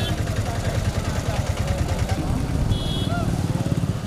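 A tractor's engine running steadily close by, a low rapid chugging, with voices around it.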